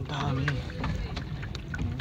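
A small boat's motor running steadily, with many sharp clicks and knocks on top and brief voices early on.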